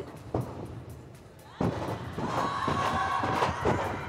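A thud about one and a half seconds in, as a tumbling pass lands, then an arena crowd cheering with sustained shouts.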